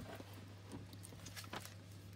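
Faint handling of paper and a plastic-wrapped paper pad: a few light taps and rustles as a packing slip is lifted off, over a steady low hum.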